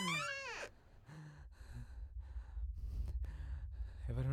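A high, drawn-out sound rising in pitch cuts off about half a second in. After it comes quick, heavy breathing, about two breaths a second, over a low rumbling drone.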